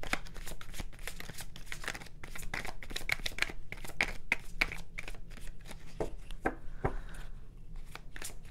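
A deck of tarot cards being shuffled by hand, a quick run of card-on-card slaps and flicks that thins out about six seconds in.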